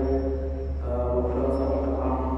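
Theravada Buddhist monks' chanting, sung on long held notes through a microphone, moving to a new note about a second in, over a steady low hum.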